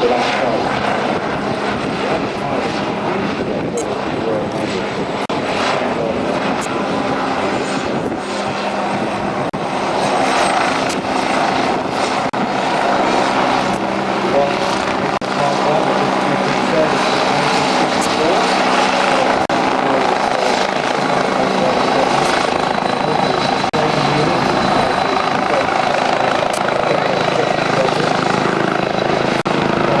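Westland Wasp HAS1 helicopter in display flight, its Rolls-Royce Nimbus turboshaft and rotors running steadily, growing somewhat louder after about ten seconds.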